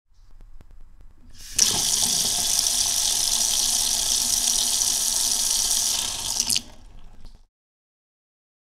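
Water running from a chrome kitchen tap in a steady stream. It starts suddenly about one and a half seconds in and cuts off about five seconds later.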